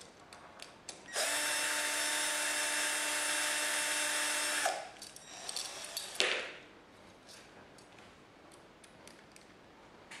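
Cordless drill-driver running at a steady speed for about three and a half seconds, driving the screws that fasten a wall socket into its flush-mounted box, then stopping. Small clicks and one sharp knock follow as the socket is handled.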